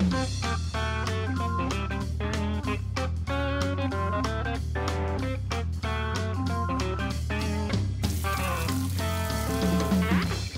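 Background instrumental music with guitar, bass and a steady drum beat.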